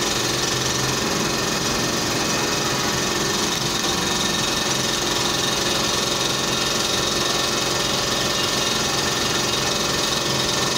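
Dental clinic machinery running steadily with an even mechanical whir, unchanged while the patient sits down and the handpiece is brought to his teeth.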